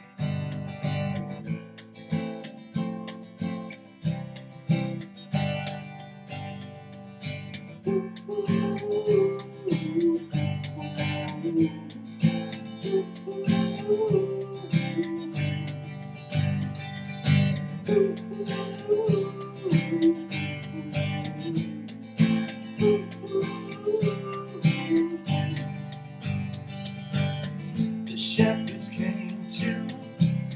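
Acoustic guitar strummed in a steady rhythm, playing a song's opening chords. From about eight seconds in, a man's voice carries a wordless melody over the strumming.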